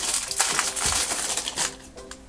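Shiny foil blind-bag packet crinkling and tearing as it is ripped open by hand, a dense crackly rustle that dies away after about a second and a half.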